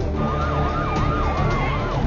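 Emergency-vehicle sirens: one in a fast yelp, its pitch rising and falling about three times a second, and another holding a steady tone that slides slowly lower. Both run over a low rumble and stop near the end.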